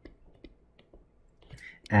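Faint, irregular clicks and taps of a stylus pen writing on a tablet screen, a handful of separate ticks.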